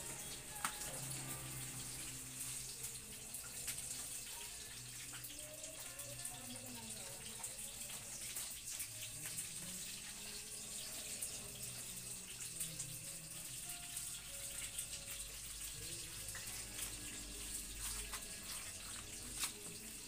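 A steady, even hiss with faint, wavering low tones underneath and occasional small clicks.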